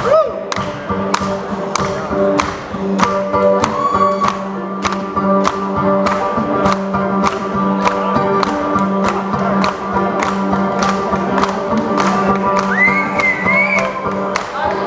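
Live blues-rock band playing: a drum kit keeps a steady beat of about two hits a second under electric bass and a stringed lead instrument. A high sliding note comes in near the end.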